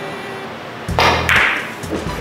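A billiard shot about a second in: a sudden sharp strike of cue and balls, followed at once by a short swish.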